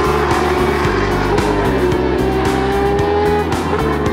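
A racing car's engine running with a steady, slowly falling note, heard over background music with a steady beat.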